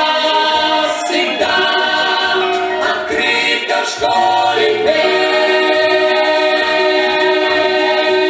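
A song with choral singing and accompaniment; from about four seconds in the voices hold long sustained notes.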